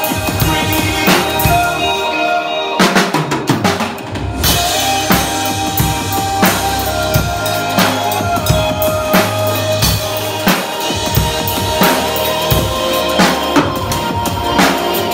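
Sonor drum kit played in a steady beat of kick, snare and cymbal hits over a recorded backing song with bass and held notes. About three seconds in there is a quick fill of rapid strokes.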